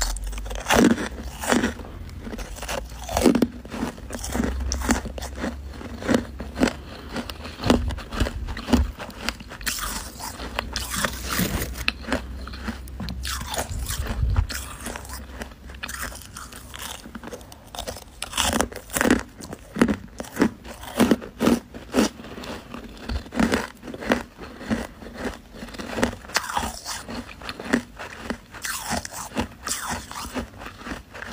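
Close-up biting and chewing of powdery freezer frost: a steady run of crisp, irregular crunches, several a second, with louder bites now and then.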